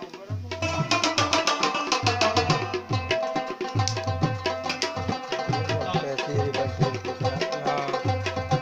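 Afghan rubab played in fast plucked runs, accompanied by tabla with its deep bass drum strokes. The music drops out briefly just at the start, then the rapid plucking comes back in.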